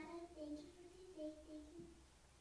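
Faint singing in children's voices, a slow tune of held notes.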